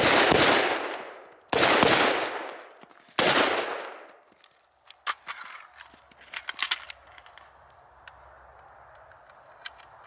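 Three loud rifle reports about a second and a half apart, each trailing off over about a second. A scatter of short sharp clicks and knocks follows.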